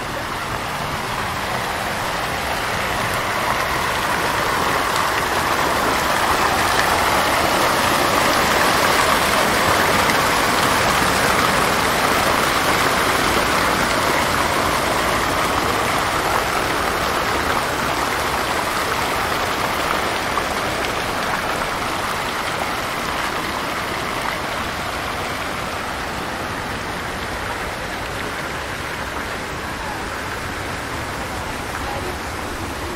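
Fountain jets splashing into a water basin: a steady rush of falling water that grows louder toward the middle and then slowly fades.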